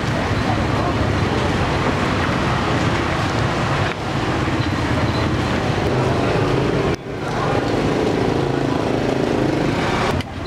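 Steady street noise with a low running engine hum and indistinct voices, broken by two brief dropouts about four and seven seconds in.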